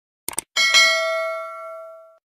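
Subscribe-button animation sound effect: a quick double mouse click, then a bright bell ding that rings on and slowly fades away.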